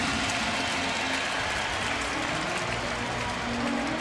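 Steady crowd noise from a baseball stadium's stands: many voices and clapping blended into an even wash.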